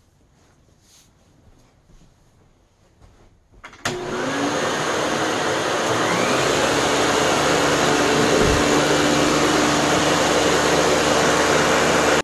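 Electrolux Olympia One 1401 B canister vacuum with its PN4 power nozzle switched on nearly four seconds in after faint shuffling, its motor rising briefly in pitch as it spins up and then running loud and steady.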